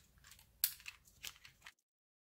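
Card stock and paper being handled on a craft mat: a few short, faint crackling rustles. The sound then cuts off completely near the end.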